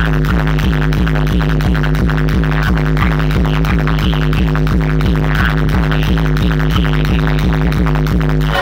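Loud electronic dance music played through a large DJ speaker setup: a sustained deep bass line under a fast, steady pulsing beat.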